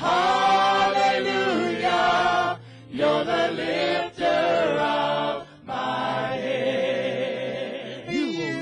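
Gospel praise team singing together in harmony, in sung phrases with short breaks between them.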